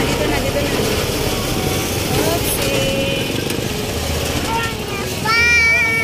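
Motorcycle engine of a tricycle running under steady street noise, with voices around it and a loud voice calling out just after five seconds in.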